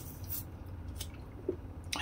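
Faint swallowing and wet mouth sounds as a man drinks a swig from a small liquor bottle, with a few soft clicks scattered through it.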